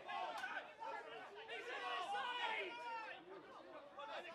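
Several men's voices calling and shouting over one another, indistinct, with no words that can be made out.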